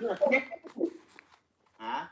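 Voices of people on a video call: a few drawn-out spoken sounds, a pause of about a second, then a short burst of voice near the end.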